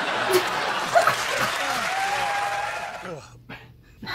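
A studio audience laughing and applauding, dying away about three seconds in.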